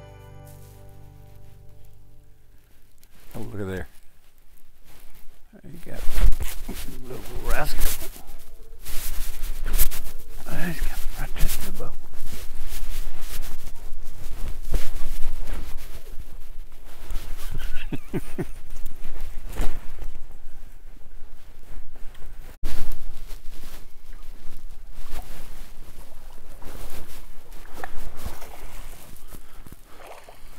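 Background music fades out over the first few seconds. Then loud, gusty wind buffeting and sharp handling knocks come from an open boat while an angler fights a bass on a bent rod.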